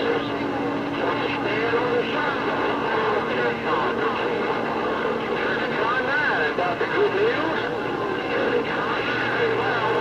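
Galaxy CB radio receiving several distant stations at once: garbled, overlapping voices with warbling whistles over steady static, too rough to make out.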